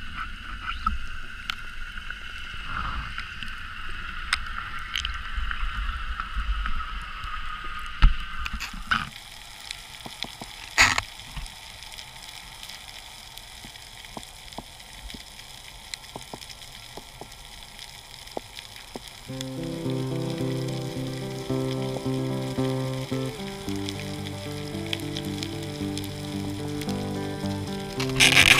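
Underwater ambience from a diver's camera: a steady crackling hiss with scattered clicks and a slowly falling whine in the first third. About two-thirds of the way in, background music with sustained keyboard-like notes comes in over it.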